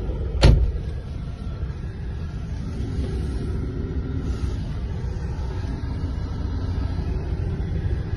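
Steady engine and road rumble heard inside a vehicle's cabin as it drives, with one sudden thump about half a second in.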